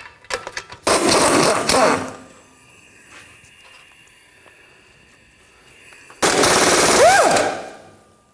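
A 1/2-inch impact gun with a 15 mm socket hammers off the two rusty exhaust flange nuts on the rear catalytic converter, in two bursts of rapid hammering about a second each. The second burst ends in a short whine.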